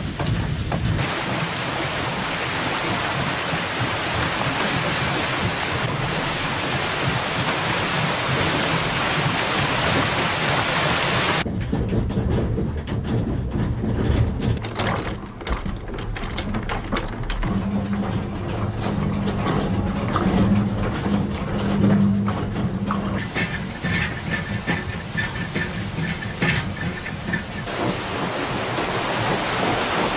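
Water-powered corn mill at work. A steady rushing noise cuts off abruptly about eleven seconds in and gives way to an irregular rumbling clatter of the running mill machinery with a low steady hum and, later, a faint high tone. Steady rushing noise of water returns near the end.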